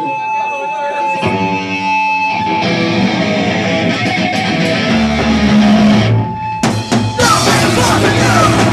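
Live punk rock band starting a song: electric guitar and bass play the opening, then drums with cymbals and the full band come in near the end.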